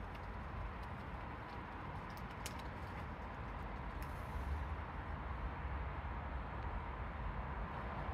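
Steady outdoor background noise with a low rumble and a faint steady tone, a few faint clicks, and a brief soft hiss about halfway through.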